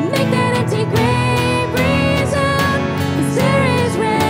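A woman singing a contemporary worship song, accompanied by keyboard and a band with a steady drum beat.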